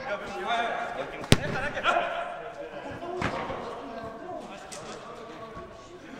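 A football kicked hard, a single sharp smack about a second in, followed by a second, duller thump about three seconds in, with players' voices calling around it.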